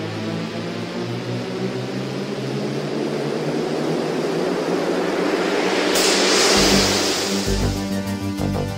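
Instrumental intro of a 1980s Cantopop song: held synthesizer chords under a rising swell of noise that builds to a bright crash about six seconds in. The beat comes in near the end.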